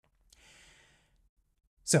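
A man's faint breath through the mouth, lasting under a second, during a pause between sentences; he starts speaking again near the end.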